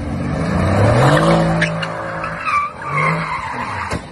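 Car engine revving, rising in pitch about a second in, with tyres squealing in wavering screeches as the car skids.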